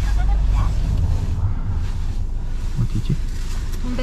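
Low, steady rumble of a car idling, heard inside the cabin, with a brief murmur of a voice about three seconds in.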